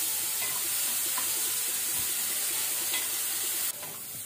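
Chopped onions frying in oil in an aluminium kadai over a medium flame, sizzling steadily while stirred with a plastic spatula. The sizzle drops a little just before the end.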